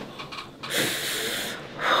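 A person's forceful breathy exhale, a rush of air just under a second long starting about two-thirds of a second in, as the patient lets out her breath during a chiropractic adjustment; a voiced "oh" begins right at the end.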